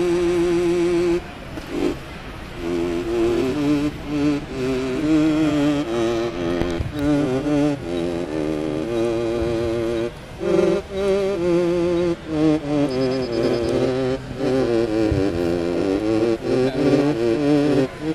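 Synthino synthesizer played from a keyboard: a single-voice melody of held notes with a strong vibrato wobbling the pitch, with a couple of short pauses and some sweeping pitch changes near the end.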